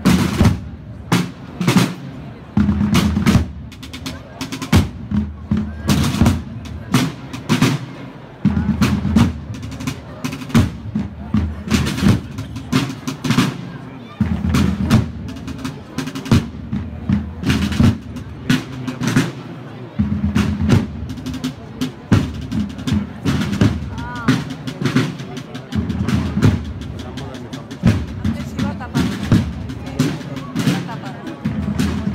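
Processional drums: a dense run of snare strikes and rolls over deep drum rolls that swell and break off every few seconds.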